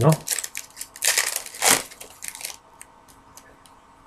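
Plastic packaging crinkling in a few rustling bursts, then several light clicks as sports cards are handled.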